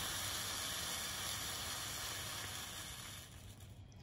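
The last few burning fireworks lances hissing steadily, the hiss dying away about three seconds in as they burn out.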